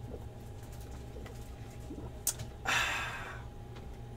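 A sharp click about two seconds in, followed by a short breathy exhale that fades within about half a second, as after a swig of a drink. Steady low electrical hum underneath.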